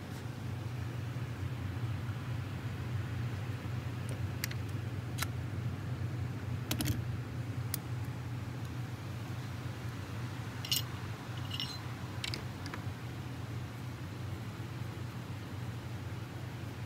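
Glock G17 Gen5 pistol being field-stripped by hand: a handful of short, sharp metallic clicks and clacks as the slide and barrel are worked off the polymer frame, over a steady low hum.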